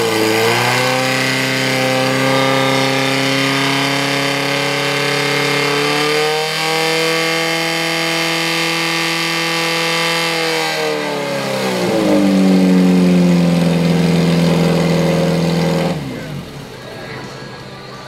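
Engine of a portable fire pump running at high revs under load as it pumps water out through the attack hoses, the note rising briefly about six seconds in. About eleven seconds in it is throttled back to a lower, slower note, and the sound ends about sixteen seconds in.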